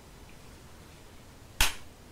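A single sharp click about one and a half seconds in, against faint room tone.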